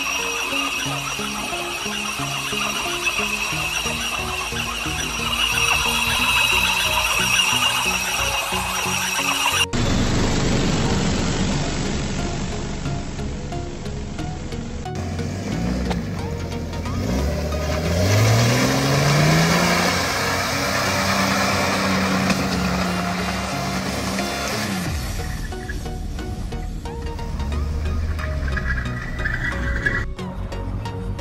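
Background music over a run of short clips. About halfway through, a vehicle engine revs up, its pitch rising over a few seconds, then holds high.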